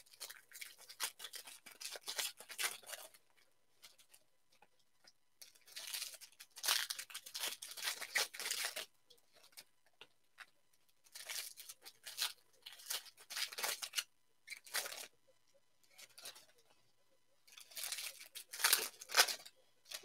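A stack of football trading cards being shuffled and slid against one another by hand, in about four quiet runs of scratchy friction separated by short pauses.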